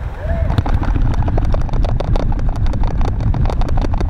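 Handling noise picked up by a Synco Mic-D30 shotgun microphone in its shock mount on a hand-held camera as the camera is moved about: a steady low rumble with many small knocks and clicks. It is the vibration that still gets through the shock mount, as heard in a shock-mount test.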